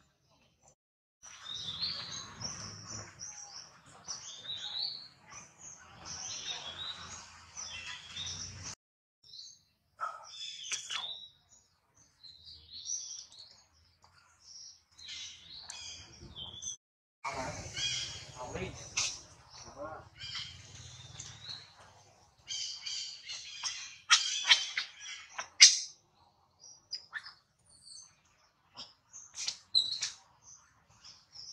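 High-pitched chirping animal calls in several stretches that start and stop abruptly. Two sharp clicks late on are the loudest sounds.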